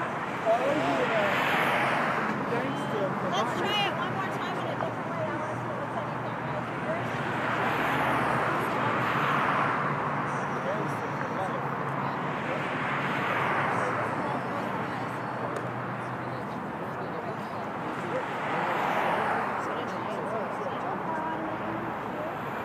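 Cars passing on a city street, about four swelling in and fading away one after another, with people's voices in the background.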